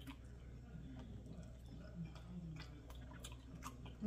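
Quiet chewing of a cheeseburger slider, with scattered wet mouth clicks, over a low steady hum.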